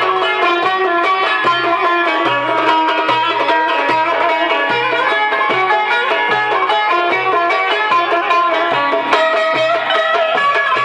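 Turkish folk ensemble playing an instrumental dance tune: violin and bağlama with a cümbüş over a darbuka beat, a low stroke pulsing steadily about twice a second.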